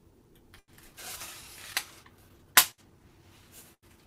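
Fly-tying scissors snipping material at the hook: a brief rustle, then two sharp snips a little under a second apart, the second much louder.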